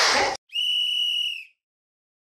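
A single steady, high whistle blast about a second long, starting about half a second in and cut off cleanly into dead silence. It is an edited-in start whistle marking the beginning of practice.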